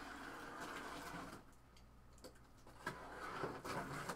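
Cardboard case being cut and opened by hand: a faint scraping hiss for about the first second, like a blade slitting packing tape, then quiet, then light rustling and small knocks of the cardboard being handled near the end.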